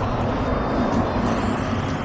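Articulated city bus overtaking close alongside, its engine and tyres making a steady low hum and rumble.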